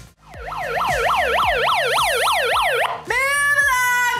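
An electronic yelp siren from a handheld megaphone, its pitch rising and falling quickly about four times a second. It cuts off about three seconds in, and a loud voice through the megaphone follows, holding drawn-out notes.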